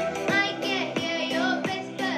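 A boy singing a Western song over an accompaniment with a steady beat.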